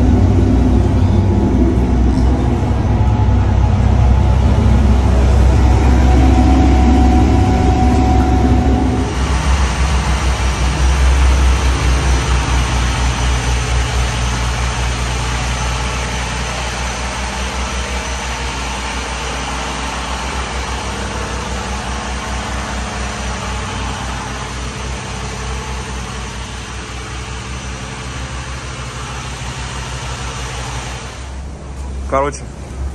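Motor yacht's inboard engines running under way, a loud steady low drone heard from inside the hull. About nine seconds in the deeper rumble eases and a hissing rush comes up over it. The drone then slowly fades.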